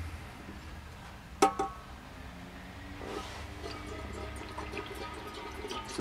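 A single metallic clink about a second and a half in. From about halfway, water is poured from a bottle into a stainless steel stovetop kettle, faint and steady.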